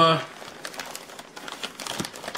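Sealed plastic toy packaging crinkling as it is handled, a quick run of small crackles.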